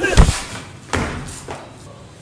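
Heavy thuds of a hand-to-hand scuffle: a short shout with a loud thud about a quarter second in, then two lighter thuds about one and one and a half seconds in.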